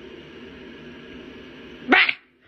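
A steady low background hum, then near the end a short, loud animal cry that rises sharply in pitch.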